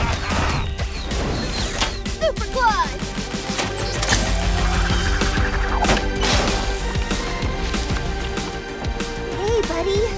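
Cartoon action music with a dense run of crashing and thudding sound effects.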